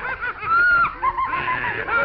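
Cartoon boy's voice laughing in a run of quick, high-pitched laughs, with a short break about halfway through.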